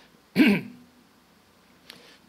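A man clearing his throat once, a short burst about half a second in that trails off into a brief hum. It is followed by a quiet pause with a faint click near the end.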